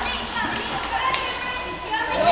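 Hubbub of an indoor pool during a children's swimming lesson: children's voices and the splashing of small swimmers kicking through the water, with a few short sharp splashes around the middle.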